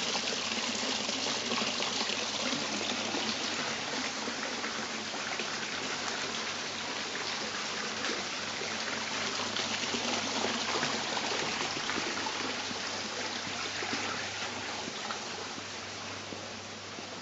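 Water spilling from a small concrete fountain basin into a pool below: a steady, continuous splashing that eases slightly near the end.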